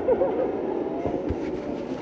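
Muffled steady rumble picked up by a phone recording from inside a pocket, with a faint voice near the start and a short low thump just past the middle.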